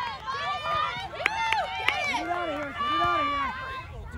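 Several voices calling and shouting over each other, many of them high-pitched children's voices.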